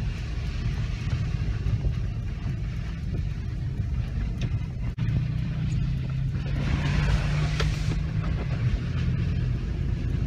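Toyota Prado driving along a wet dirt track, heard from inside the cabin: a steady engine drone with tyre and road rumble. A brief drop about halfway through, then a steadier engine note.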